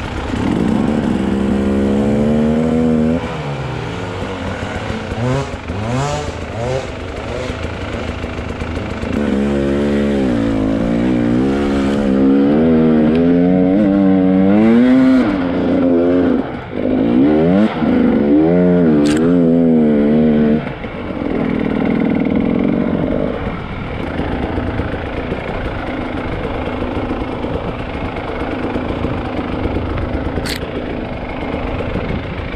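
KTM 300 EXC two-stroke enduro motorcycle engine revving up and down over and over as the bike is ridden along a forest trail, loudest in the middle. It settles to steadier, lower running for the last third.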